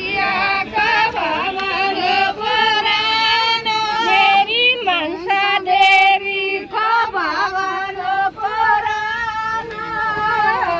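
A high-pitched voice singing a song, holding long notes that slide between pitches.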